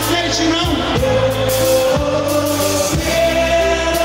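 Live stage band music with singing over a steady beat and a moving bass line.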